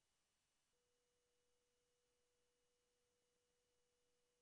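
Near silence, with a very faint steady tone starting about a second in.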